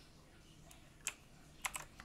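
A few faint keystrokes on a computer keyboard, coming in the second half as short separate clicks.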